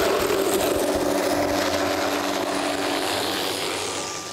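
A Hughes 500 helicopter's turbine engine and main rotor, running at full power as it lifts off and flies away: a steady hum over a broad rushing noise, slowly fading near the end as it moves off.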